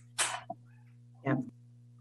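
A person makes a short breathy vocal noise, then says a quiet "yeah" about a second later, over a steady low hum.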